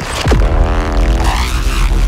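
Cinematic trailer sound-design hit from the Devastator Breakout Pro sample library's signatures patches. A deep sub-bass boom with a steep falling pitch sweep just after the start is layered with a droning tone and a hissing noise wash.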